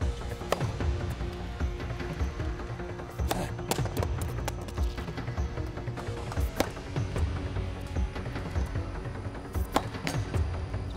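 Background music, with a few sharp knocks over it, most clearly one near the end.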